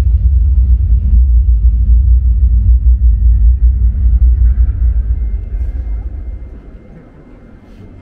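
Deep bass rumble played through a projection-mapping show's loudspeakers, steady at first, then fading away over a couple of seconds about five seconds in.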